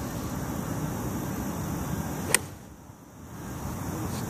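A golf iron strikes a ball off the turf in a full swing: one sharp click a little over two seconds in, over a steady low background rumble.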